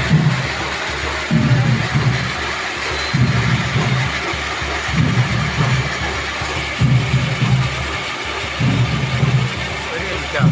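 A firework fountain spraying sparks, hissing and crackling steadily, with a low rhythmic beat pulsing about every two seconds underneath.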